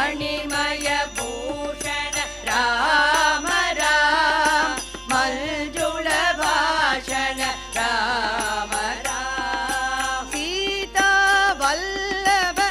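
A women's choir sings an Indian devotional bhajan in unison, with harmonium and tabla accompanying. The voices glide and waver, the harmonium holds steady notes beneath, and the tabla strokes keep a regular beat.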